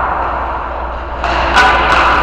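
Indoor ice rink ambience: a steady wash of noise over a constant low hum, growing louder a little past halfway through.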